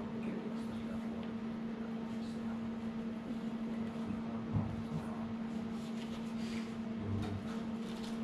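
Steady machine hum at a constant pitch, with a few faint soft handling knocks.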